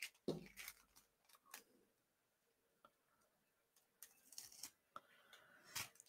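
Near silence, with a few faint taps and crinkles of card and a clear plastic shaker pocket being pressed down and picked up.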